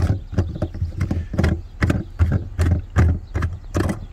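Irregular clicks and knocks from a plastic star-shaped hold-down knob being unscrewed by hand, the retainer that holds the jack kit and spare tire under the cargo floor.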